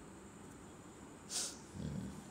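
Faint room tone, then about one and a half seconds in a short, sharp breath drawn through the nose, followed near the end by a low murmur of a man's voice.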